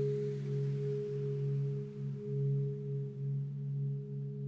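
Background meditation drone: a few steady low held tones, like a singing bowl or tuning fork, wavering slowly in loudness.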